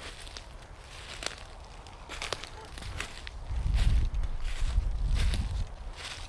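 Footsteps through dry leaf litter, with scattered short crackles and crunches. A low rumble on the microphone comes in about halfway through and is the loudest part.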